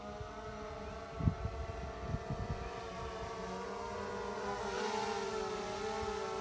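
DJI Phantom 4 Pro V2 quadcopter's propellers and motors humming steadily while it carries a slung payload, getting louder over the last few seconds as it flies closer, the pitch wavering slightly as it maneuvers. A low thump about a second in, over a rumble of wind on the microphone.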